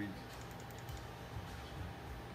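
A run of faint, quick clicks from computer keys being pressed, over a low steady hum.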